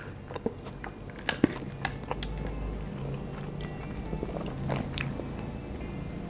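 Close-miked chewing of fast food, with sharp crisp clicks and crunches, most of them in the first two seconds and a few more near the end.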